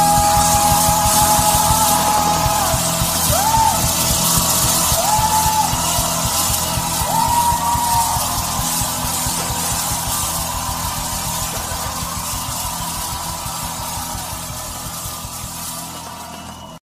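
Rock and roll song with a held, bending vocal or lead line over a steady beat, gradually fading out.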